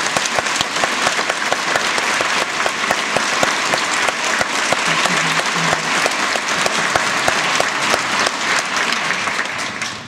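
Theatre audience applauding a finished ballet variation: dense clapping that dies away near the end.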